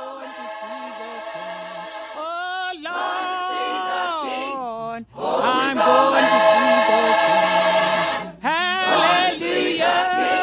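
Gospel choir singing long held chords that slide from note to note, with no clear words. The singing breaks off briefly and comes back louder about halfway through, then pauses for a moment again near the end.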